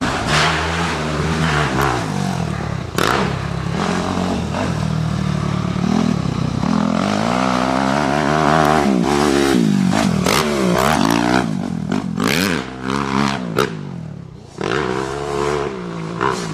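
Suzuki RM-Z four-stroke motocross bike engine revving up and down again and again as it is ridden round the track, rising to its loudest around the middle as the bike draws near, with a few short sharp bursts over it.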